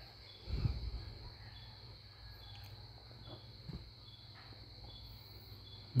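Faint steady chirring of crickets or other insects over a low hum, with a soft low thump about half a second in.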